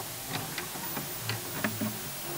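Glitch-style TV static sound effect: a steady hiss broken by a handful of irregular clicks and short crackles.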